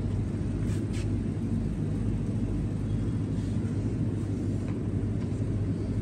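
Metal shopping cart rolling over a tiled supermarket floor: a steady low rumble and rattle from its wheels, with a constant hum underneath and a few faint ticks about a second in.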